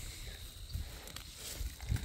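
Faint rustling and handling noise as a phone is moved close through garden plants, over a low rumble.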